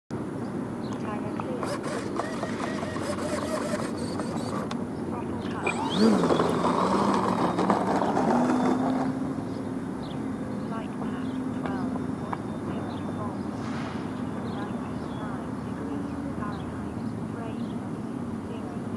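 Electric RC plane's motor and propeller throttling up about six seconds in, with a burst of noise as it takes off, then a steady propeller drone that grows fainter as the plane climbs away.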